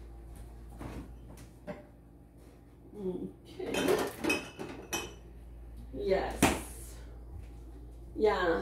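Kitchenware clattering off-camera: dishes, cutlery and bottles clink and knock as they are moved about, most of it between about three and seven seconds in.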